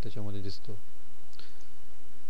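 A single faint computer-mouse click about a second and a half in, after a short phrase of speech, over a steady low hum.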